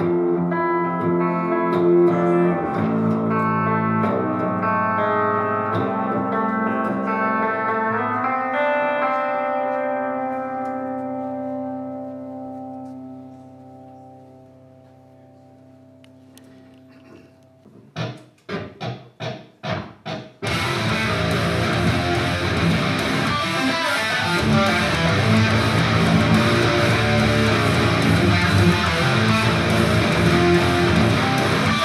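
Electric PRS guitar tuned to drop A, played through an amp rig. Clean ringing chords sustain and fade away over the first half. Near two-thirds in comes a quick run of about six short muted chugs, then heavy distorted low riffing to the end.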